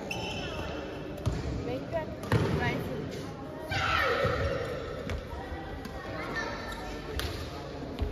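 Badminton rally in a large echoing hall: a few sharp cracks of rackets striking the shuttlecock, with voices calling out for about a second near the middle.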